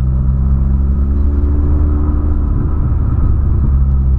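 Volkswagen Polo sedan's engine droning through its aftermarket sport exhaust, heard from inside the cabin while driving; a heavy, deep note. The pitch climbs a little around the middle, then shifts and settles near the end.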